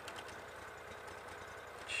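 Six-wheeled John Deere Gator utility vehicle's small gasoline engine running steadily, with a fast, even low pulse and no change in speed.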